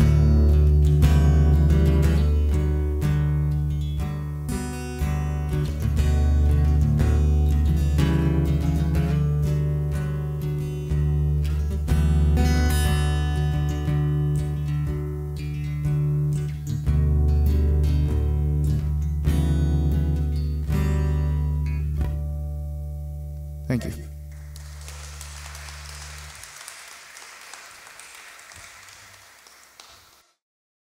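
Solo acoustic guitar playing an instrumental passage of picked and strummed notes over held low bass notes, closing on a final chord about 24 seconds in that rings out and dies away.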